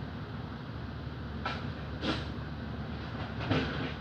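A steady low mechanical rumble, with three short knocks about a second and a half, two seconds and three and a half seconds in; the last knock is the loudest.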